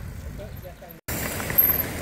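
Mountain bikes riding past on a dry dirt trail, tyres on loose gravel and dust, under a noisy rumble of wind on the microphone, with faint voices. The sound drops out for an instant just past halfway and comes back louder, with a short sharp sound soon after.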